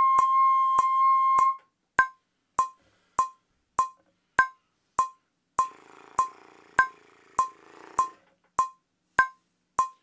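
A trumpet with a practice mute holds a long final note that ends about a second and a half in. A metronome clicks steadily about every 0.6 s, with a stronger click every fourth beat, and some faint soft noise comes in around the middle.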